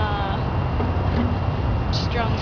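A drawn-out hesitant "um" from a speaker at the start, over a steady low rumble of nearby road traffic.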